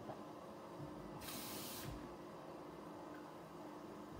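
Kitchen tap running briefly into a cup: a short hiss of water about a second in, lasting under a second.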